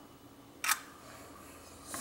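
A metal spoon clicks once against a nonstick frying pan about two-thirds of a second in, over a faint steady hiss.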